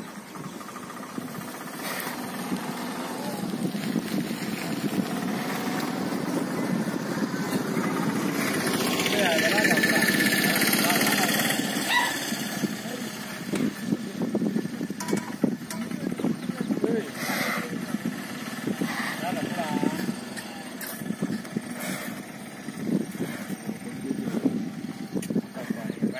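A motor vehicle engine that swells to its loudest about ten seconds in, then fades away, under the murmur of people's voices, with a few short knocks scattered through.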